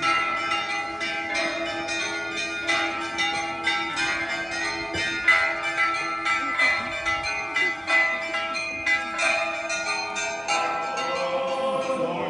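Orthodox church bells ringing a fast festive peal: many smaller bells of different pitches struck in quick succession, several strikes a second, over the steady ring of a lower bell.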